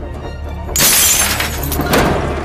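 A sudden, loud burst of shattering noise like breaking glass, about three-quarters of a second in and lasting under a second, over a film's background music.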